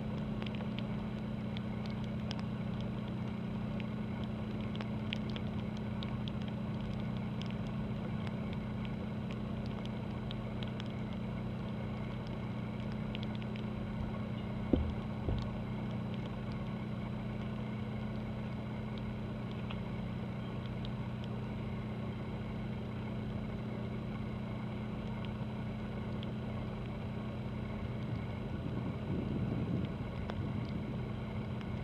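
Steady low engine hum of a cruise ship and its tugboat working in the harbor, an even drone that holds a constant pitch. A sharp knock and a second thump come a little past halfway.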